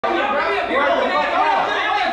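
Several people talking over one another in a room, an indistinct babble of voices.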